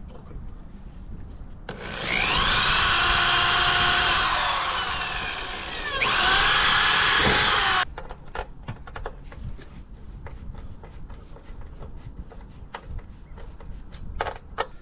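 Cordless drill working into the aluminum deck in two runs: the motor whines, its pitch sagging under load, then spins up again and stops abruptly. Afterwards come light clicks and knocks of small metal parts being handled.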